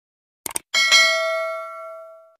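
Subscribe-button sound effect: a quick double click about half a second in, then a bright bell ding that rings out and fades over about a second and a half.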